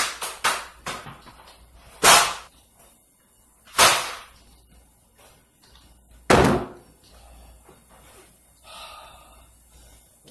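A series of hard blows: a person striking a surface or furniture, heard as loud slams and thumps. There are three in quick succession at the start, then single blows about two, four and six and a half seconds in.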